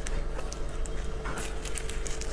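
A knife cutting into the skin of a braised pig head held in gloved hands, giving a few short sticky clicks over soft handling noise.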